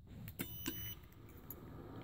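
A click, then a short high electronic beep about half a second in, as a wireless remote receiver module switches a car-audio amplifier on.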